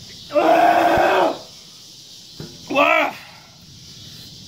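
A man's drawn-out yell lasting about a second, then a shorter wavering cry about three seconds in. He is crying out in pain from the burning heat of a very hot pepper he has eaten.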